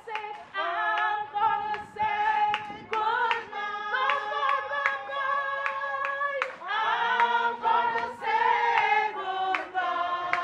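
Mourners singing a song unaccompanied, a woman's voice leading at the microphone, with hand claps keeping time about twice a second.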